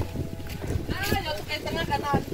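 A person's voice, drawn-out and sing-song, over low wind rumble on the microphone.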